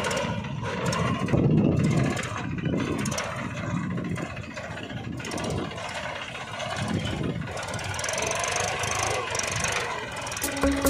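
Small engine of a homemade mini tractor running as it drives along a dirt track, with an uneven, rough sound that rises and falls.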